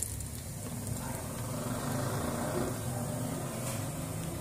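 Battered eggplant slices sizzling as they deep-fry in hot oil, over a steady low hum.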